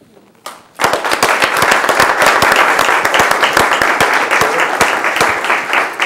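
A roomful of people applauding. It starts about a second in, goes on as a steady mass of many hand claps, and thins a little near the end.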